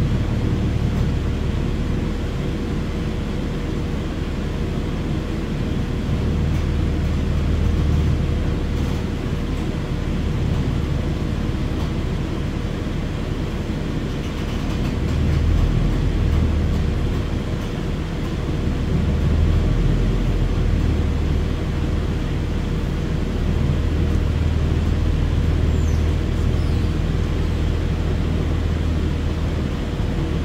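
Cabin noise aboard a New Flyer XDE60 articulated diesel-electric hybrid bus: a low rumble of drivetrain and road that swells twice, with a faint steady hum running through it.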